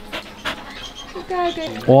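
A dog panting quietly in a few short breaths while being petted, with a voice starting just at the end.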